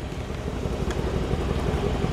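Mercedes-AMG C63 coupe's 4.0-litre twin-turbo V8 idling: a steady low rumble.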